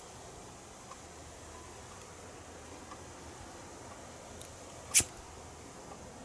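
A disposable butane lighter burning under heat-shrink tubing: quiet, with one sharp click of the lighter about five seconds in.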